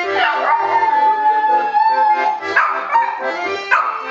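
A small white dog howling along to an accordion: one long, steady howl held for about two seconds, then two shorter howls near the end, over the accordion's chords.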